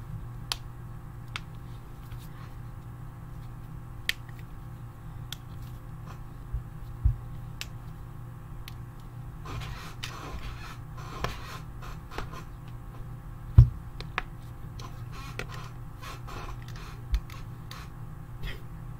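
Low steady hum with scattered sharp clicks and taps. About ten seconds in comes a couple of seconds of rustling.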